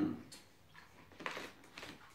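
Faint handling sounds of a water bottle being raised to drink: a few soft scrapes and clicks about a second in.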